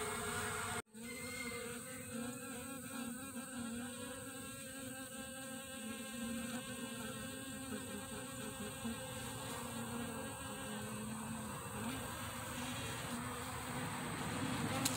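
Honeybees buzzing at a hive entrance: a steady hum whose pitch wavers slightly as bees fly in and out. It follows a brief gap about a second in.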